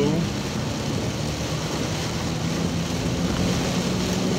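Steady rushing background noise with a faint low hum running under it.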